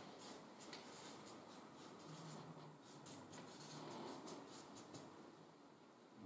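Marker pen writing on flip-chart paper: a quick run of short scratchy strokes that stops about a second before the end.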